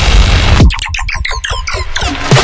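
Electronic bass-music track: a dense, noisy synth passage over heavy deep bass cuts off about two-thirds of a second in. It gives way to a rapid glitchy stutter of chopped synth stabs, about ten a second, with the bass gone.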